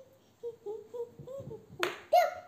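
A toddler making a string of short, pitched humming sounds with her mouth closed while chewing, then a sharp click near the end.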